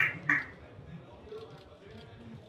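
Two short spoken syllables from a person's voice at the very start, then faint room chatter and murmur.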